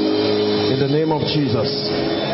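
Sustained keyboard chords holding under the prayer, with a man's voice speaking over them from just under a second in.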